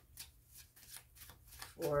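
Tarot deck being shuffled by hand: a quiet, quick run of short card flicks.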